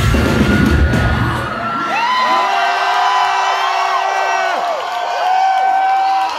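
Live metal band music, with pounding drums and guitars, stops about a second and a half in. The crowd then cheers, with many overlapping whoops and screams.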